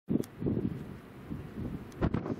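Gusty wind buffeting the camera microphone in an irregular low rumble. It starts abruptly and strongly, then eases off.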